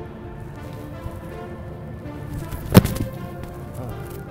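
A football placekick: the kicker's foot strikes the ball off a kicking holder with one sharp thud a little under three seconds in. Steady background music plays throughout.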